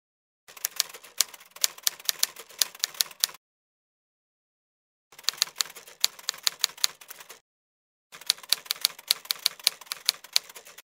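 Mechanical typewriter keys clacking in quick strikes, several a second, in three runs of two to three seconds each with dead silence between them.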